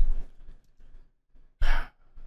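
A man's exasperated sigh into a close microphone: a heavy breath out at the start, fading over about half a second, then a short, sharp breath near the end.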